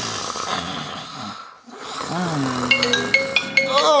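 Snoring: a long noisy in-breath, a short pause, then a lower snore that falls in pitch. About three seconds in, a phone ringtone of short, bright chiming notes starts up.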